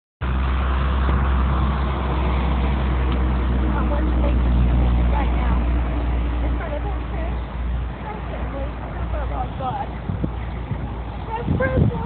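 Faint voices of a small gathering talking, under a steady low rumble that fades about eight seconds in.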